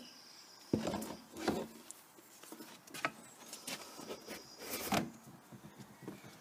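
Plastic pipe being worked into the centre socket of a plastic pond filter housing: a few separate scrapes and knocks of plastic on plastic.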